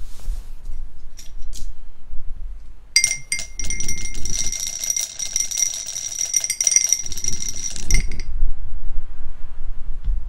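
A die rattling inside a clear drinking glass as it is shaken hard, a fast clatter with the glass ringing, lasting about five seconds and stopping suddenly.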